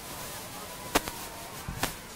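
Two short, sharp cracks, about a second in and near the end, over faint steady outdoor background noise.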